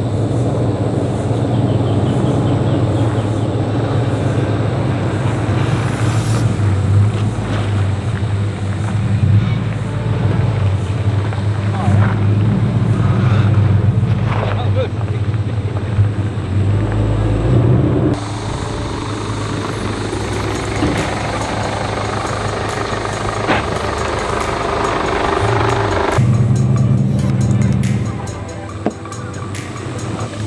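Toyota Land Cruiser 100 series V8 engine running at low speed as the four-wheel drive crawls over a rutted sandy track: a steady low drone. It shifts abruptly in tone a few times, about six, eighteen and twenty-six seconds in.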